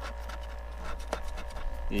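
A fingernail scratching the coating off a paper scratch-off lottery ticket, in short, soft scraping strokes.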